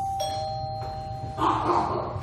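Two-note ding-dong doorbell chime: the higher first note is already ringing and the lower second note strikes just after, both ringing on and fading; near the end comes a brief louder noise.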